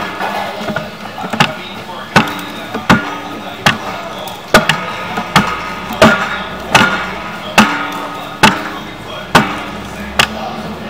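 Sharp knocks repeating steadily about every three-quarters of a second, over a low steady hum.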